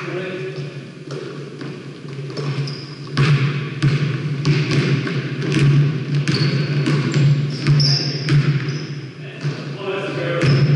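Basketball bouncing on a hardwood gym floor amid running footsteps and short high sneaker squeaks, all echoing in a large hall, with players' voices in the background.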